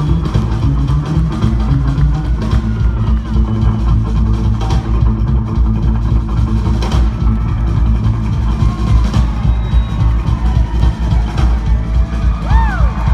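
Live rockabilly trio of upright bass, drums and electric guitar playing, heard from far back in an arena audience, with the bass and drums carrying most of the sound.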